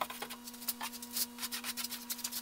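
Paintbrush bristles rubbing wet paint onto a six-panel door in rapid short strokes, over a steady low hum.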